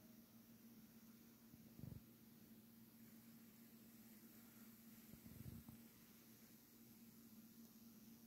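Near silence: faint room tone with a low steady hum and two soft low thumps, one about two seconds in and one a little after five seconds.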